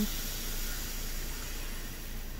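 Steam iron hissing steadily, slowly fading.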